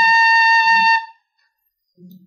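Metal tin whistle holding one long, steady high note that stops about a second in.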